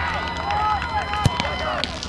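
Referee's whistle blown in one long blast; about a second in, the football is struck once with a sharp thud as the free kick is taken. Players' voices call out around it.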